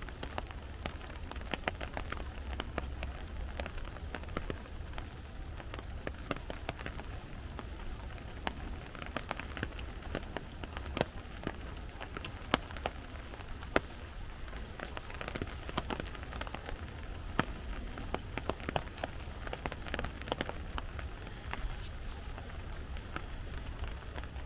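Rain falling on forest foliage: a steady patter with many irregular drop impacts, over a low rumble.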